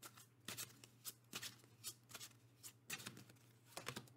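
A deck of oracle cards being shuffled by hand: a run of short, soft card-on-card swishes, about two to three a second.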